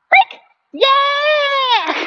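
A voice: a short call, then one long, high, drawn-out call of about a second that drops in pitch at its end.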